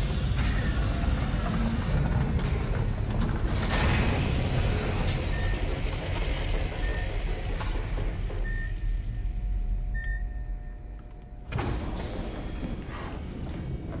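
Sci-fi film soundtrack: a heavy mechanical door opens over a deep, steady rumble, with a loud hiss of released air lasting a couple of seconds about five seconds in. A short high beep repeats about every second and a half, under a music score.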